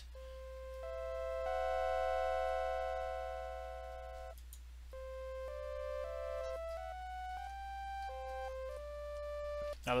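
Bitwig Studio's Organ synth playing. A held chord swells up and fades away over about four seconds as a slow LFO modulates it. After a short gap, a run of single held notes follows, each changing pitch about every half second.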